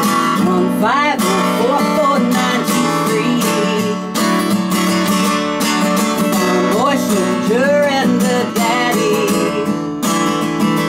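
Acoustic guitar strummed steadily, with a voice singing a melody without clear words over it, rising and falling about a second in and again near the end.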